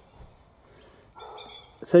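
Birds calling in the background, with one short, high, warbling call about a second and a half in.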